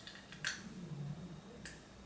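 Two soft clicks about a second apart as a clear plastic Invisalign aligner tray is pried off the back teeth with a finger and unclips, with a faint low hum between them.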